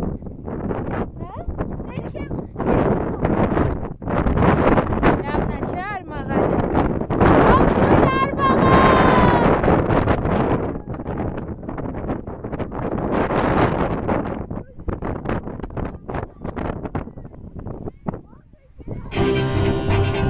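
Wind buffeting the camera microphone in loud, uneven gusts, with people's voices talking through it. Music with bowed strings comes in about a second before the end.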